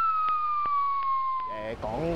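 An edited-in comedic sound effect: a single whistle-like tone gliding steadily down in pitch, with soft ticks about four or five times a second underneath. It stops near the end.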